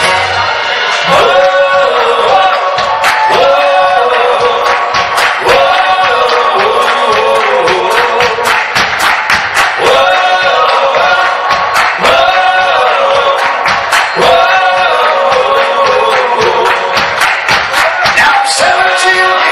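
Live rock band in a clap-along breakdown: the players clap their hands in a steady beat while several voices sing a repeated phrase, with the bass and drums dropped out.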